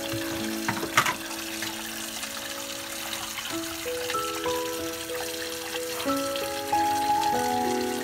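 Tap water running steadily into a stainless bowl holding two stone mortars, filling it to soak them in salt water, under background music. A sharp knock sounds about a second in.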